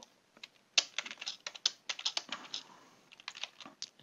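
Typing on a computer keyboard: an irregular run of quick keystrokes that starts about a second in.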